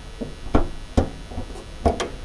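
Three sharp clicks and knocks, with a couple of fainter ones between, from the Honda Civic FD's hood as its safety latch is worked by hand and the hood is lifted open.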